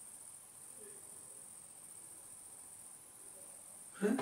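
Faint room tone in a pause between speech, with a steady high-pitched whine running all the way through.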